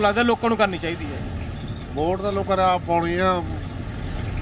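Men talking, with pauses, over a steady low rumble of a bus engine inside the bus.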